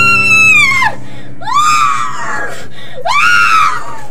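A woman's shrill, high-pitched screams: one long held cry breaks off about a second in, then two shorter cries rise and fall away. Steady music drones underneath.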